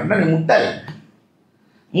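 A man speaking Tamil into a microphone for about a second, then a short pause of near silence.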